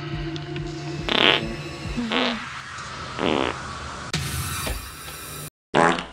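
Dubbed-in fart sound effects: three short rippling farts about a second apart, the first the loudest, then a hissing burst, over a steady low background music drone. Speech starts just before the end.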